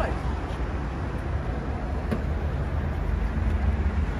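Steady low outdoor rumble of background noise, with a faint click about two seconds in.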